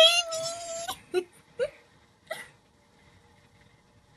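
A high-pitched whimpering cry, held steady for about a second, then three short yelps, fading to faint steady tones.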